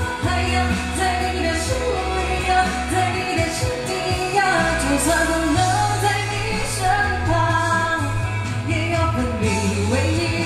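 A woman singing live into a handheld microphone over pop accompaniment with a steady bass line.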